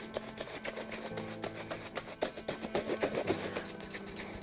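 A shoe brush worked fast and hard over a leather dress shoe, buffing in the freshly applied polish with quick, regular back-and-forth strokes. Soft background music plays under it.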